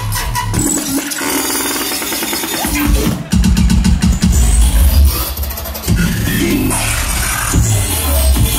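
Loud, bass-heavy electronic dance music played live by a DJ over a club sound system. The deep bass drops out for about two seconds while higher synth tones carry on, then comes crashing back in about three seconds in.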